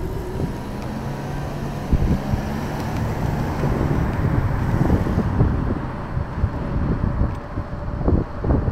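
Street traffic noise heard while riding an e-scooter, with wind rumbling on the microphone. A low steady hum runs from about half a second to three seconds in.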